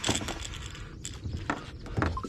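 Fishing gear being handled in a boat: a few light clicks and knocks, the loudest at the start and sharper ticks about a second and a second and a half in.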